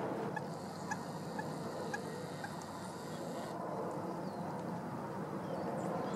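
A bird giving a run of about six short, clipped calls roughly half a second apart, over a steady outdoor background hiss.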